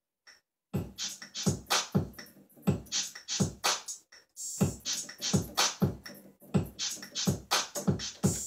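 Programmed drum-machine beat from a Yamaha MO6 workstation at about 124 BPM: kick, hi-hat and shaker with an odd extra percussion sound, starting after a short silence and looping, with a brief dip about four seconds in where the pattern comes round again.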